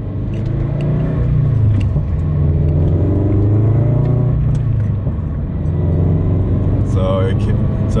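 Car engine heard from inside the cabin while driving, its note rising and then dropping twice as the car accelerates and shifts up, then running steadier.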